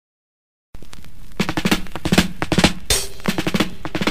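A 1975 reggae single starting after a brief silence, opening with a rapid drum fill of snare strikes over bass.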